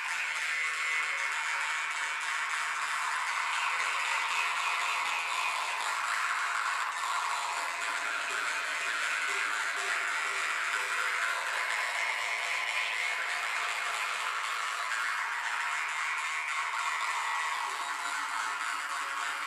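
An ensemble of Yakut khomus (jaw harps) playing together: a continuous drone with an overtone melody that slowly shifts up and down as the players change their mouth shape.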